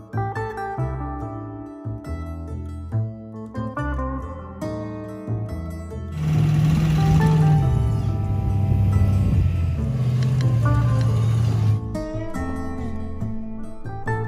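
Background music with plucked notes throughout. From about six seconds in, for about six seconds, a louder noisy rush with a low engine drone that drops in pitch rises over the music: a pickup truck with a plow blade pushing through deep snow close by.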